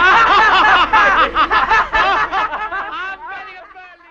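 A group of young men laughing loudly together, many voices overlapping, the laughter fading away in the last second.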